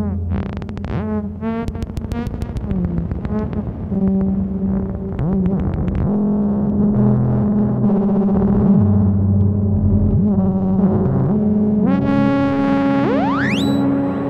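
Ciat-Lonbarde Tetrax four-oscillator analog synthesizer played live through a Chase Bliss Mood Mk II effects pedal: layered pitched tones over low sustained drones, with rapid clicking pulses in the first few seconds and pitches that bend up and down. Near the end a fast rising whine climbs and settles into a high held tone.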